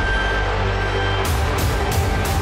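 Dramatic background score: a low drone under held tones, joined about a second and a half in by regular percussive hits, about three a second.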